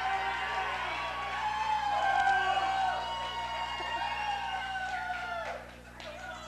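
Comedy-club audience cheering, whooping and calling out, many voices overlapping, dying down near the end.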